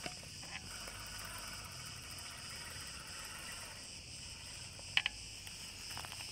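A steady outdoor insect chorus, cricket-like, with a quick pair of sharp clicks about five seconds in.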